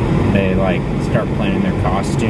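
Steady low rumble of a moving car, heard from inside the cabin, with a person's voice talking over it from about half a second in.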